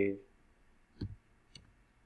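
Two faint, short clicks from a computer keyboard or mouse during code editing, about a second in and again half a second later.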